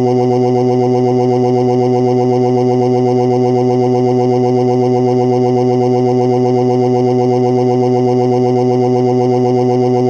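A synthetic text-to-speech voice holding one long, unbroken 'oh' at a fixed pitch, with no rise, fall or pause, so it sounds like a flat mechanical drone.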